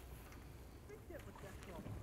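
Faint outdoor sound on a river from a small boat: a low steady rumble of wind and moving water, with a few faint short chirps.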